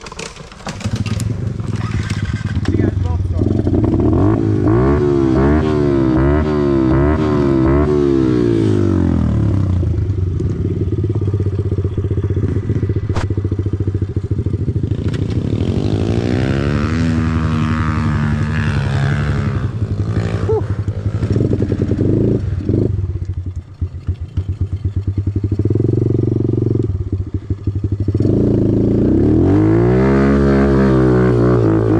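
Kawasaki KLX110R pit bike's small four-stroke single-cylinder engine with a Big Gun EVO full exhaust, ridden hard on a dirt trail, its note rising and falling over and over with the throttle. The engine drops off briefly a little past three-quarters through, then picks up again.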